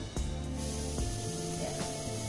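Background music with steady held low notes, joined about half a second in by a faint steady hiss.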